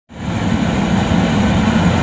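Riello R40 G10 oil burner firing into open air, a steady loud rush of flame and combustion fan.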